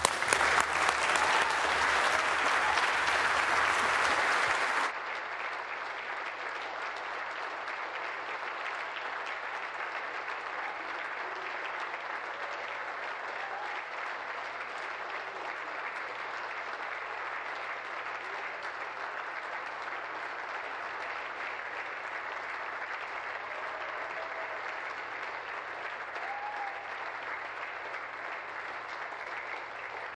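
Chamber full of legislators applauding. The clapping is loudest for about the first five seconds, then drops suddenly to a steady, quieter applause that carries on.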